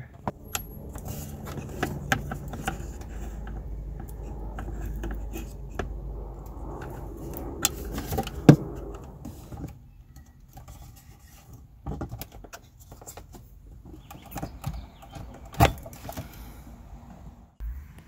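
Plastic dashboard trim clicking and rattling as the FJ Cruiser's gauge pod and its cover are handled and unclipped from the dash: irregular sharp clicks, the loudest about halfway through, over a low rumble in the first half.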